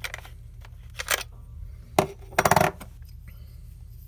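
A chipped lens-adapter ring being handled and twisted off a Canon camera's bayonet lens mount: light clicks about a second in, then a sharp click about two seconds in followed by a quick rattle of clicks. A low hum runs underneath.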